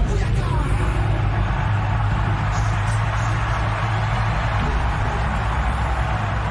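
Loud, bass-heavy wrestling entrance music over the arena sound system, running steadily.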